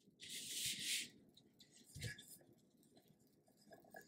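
Brief rustle of sublimation paper as a paper-wrapped skinny tumbler is handled, then one soft thump about two seconds in as it is laid into a foam-padded holder.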